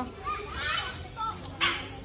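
Children's voices and snatches of speech from people nearby, with a short hissy burst about one and a half seconds in.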